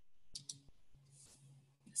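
Two quick, faint clicks a fraction of a second apart, from a computer mouse advancing the presentation slide, over a faint low hum.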